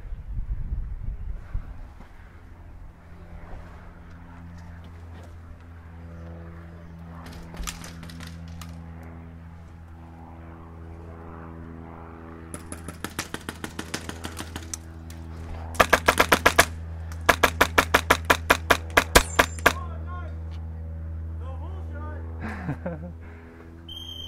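Airsoft rifle firing. A few quieter shots come a little past halfway, then a rapid burst about sixteen seconds in, followed by a string of quick shots, roughly five or six a second, lasting about two seconds. A steady low hum runs underneath.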